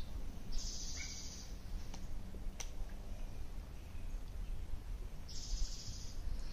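Outdoor background sound: a steady low rumble with high bird trills about half a second in and again near the end, a short bird chirp about a second in, and a couple of faint clicks.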